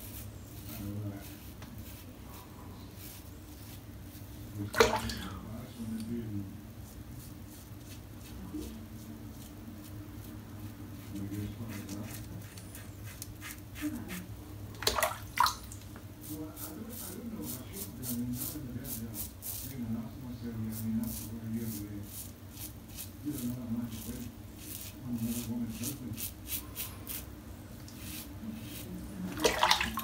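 Karve Christopher Bradley safety razor with a vintage Gillette Super Stainless blade scraping through lathered stubble on the chin and neck, in runs of quick crackling strokes. Two louder clicks come about five and fifteen seconds in.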